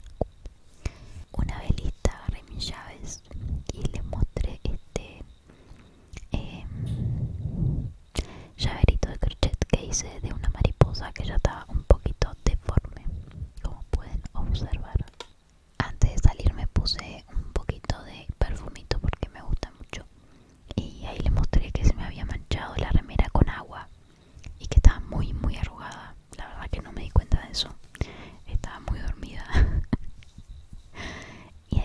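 Whispered speech, delivered close to the microphone in runs with short pauses, with many small clicks throughout.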